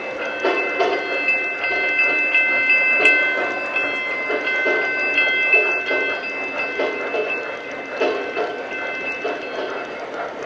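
O-gauge model train rolling around a three-rail track, its wheels clattering rhythmically over the rails, with a steady high ringing tone over the clatter.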